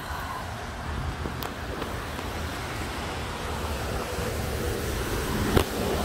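Steady outdoor background noise with a low rumble, like road traffic, and a faint knock near the end.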